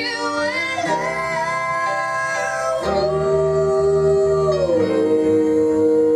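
A woman and a man singing long held notes in harmony over a plucked upright double bass, the voices sliding down to a lower note a little past halfway.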